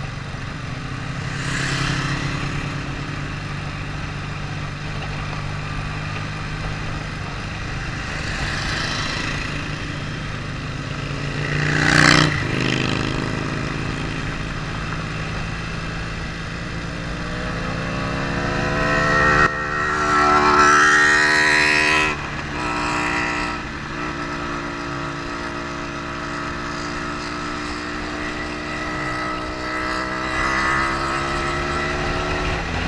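Motorcycle engine running at road speed, heard from the bike itself with wind rush over it. Past the middle it revs up in a rising pitch, with a break at each of a couple of gear changes, then settles steady again. A short loud rush of noise comes about twelve seconds in.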